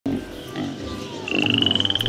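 Playful opening sound effects: a low, rapidly pulsing rattle, then, about two-thirds of the way in, a high warbling whistle that rises slowly.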